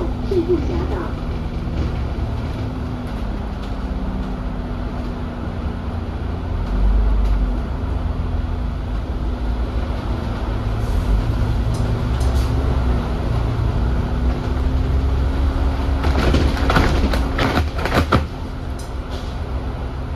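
Inside an Alexander Dennis Enviro400 double-decker bus on the move: the E40D chassis's diesel engine and driveline run with a steady low rumble and a droning tone that drifts slowly in pitch. The rumble swells about seven seconds in, and a short run of sharp rattles and knocks comes near the end.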